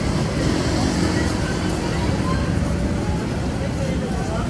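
Outdoor background noise: a steady low rumble with faint voices in the distance.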